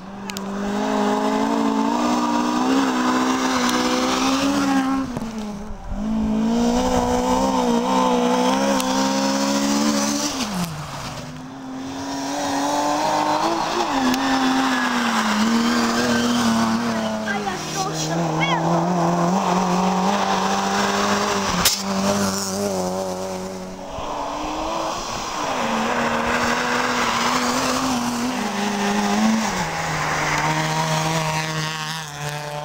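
Rally cars on a snowy, icy stage road, engines running hard at high revs. The pitch wavers and climbs, then drops sharply at gear changes a few times.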